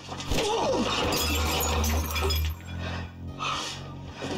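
A crash with glass shattering about a third of a second in, the breaking continuing for about two seconds, over low, droning dramatic music.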